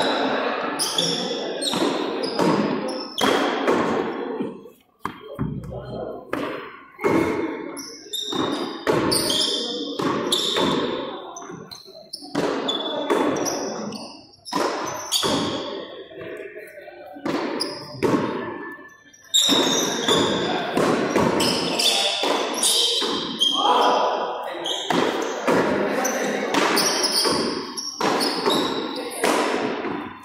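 Frontón handball rally: the pelota de lona struck by hand and smacking off the court's concrete walls and floor, a series of sharp hits at irregular spacing, each ringing out in the echo of a large hall.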